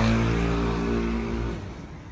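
A passing car's engine accelerating, its pitch rising and then holding steady before it fades away about one and a half seconds in.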